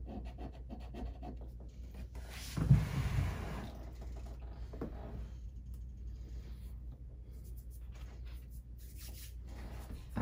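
Soft pastel sticks being handled: small scratching clicks and rubbing, with a louder rustle and knock about two and a half seconds in, over a low steady hum.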